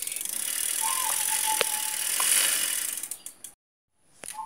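A bicycle's chain and sprockets rattling as the pedal is turned by hand, with a couple of sharp clicks. The sound cuts off suddenly about three and a half seconds in.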